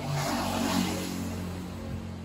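A motor vehicle passing by, its engine and tyre noise swelling about a second in and then fading, over a steady low hum.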